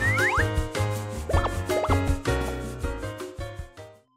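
Bright children's background music with a steady bass line, with a few quick rising slide effects near the start and again about a second and a half in. The music fades away near the end.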